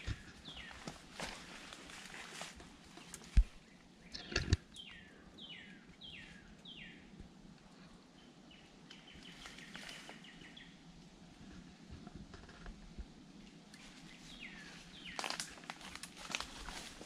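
A songbird singing a run of about five quick down-slurred notes a few seconds in, with more of the same near the end. Footsteps scuff through leafy undergrowth, with two sharp knocks, the loudest sounds, about three and a half and four and a half seconds in.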